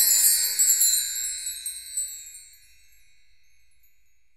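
The closing of a hip hop track: a high, shimmering chime sound ringing out and fading away, with one last small accent about two seconds in, leaving only a faint tail.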